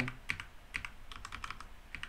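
Computer keyboard being typed on, a run of separate key clicks with short gaps between them.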